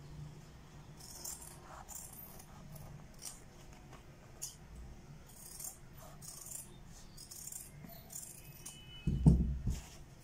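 Large tailoring scissors snipping through a folded stack of stiff buckram in a series of short crisp cuts. About nine seconds in, a louder rustle and thump as the cut stiff pieces are handled.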